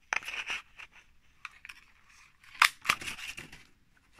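A handheld craft punch cutting a circle from card: rustling of the card as it is fed in, then a sharp snap of the punch going through about two and a half seconds in, followed by a few lighter clicks.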